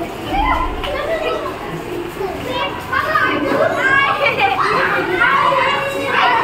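A classroom full of schoolchildren chattering and calling out all at once, many young voices overlapping, growing a little louder about halfway through.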